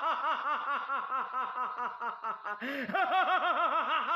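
A person laughing in a rapid, even run of "ha" syllables, about four or five a second, each rising and falling in pitch, with a short break about three seconds in.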